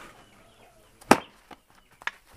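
A long black club swung down hard lands with one sharp whack about a second in, followed by a fainter knock.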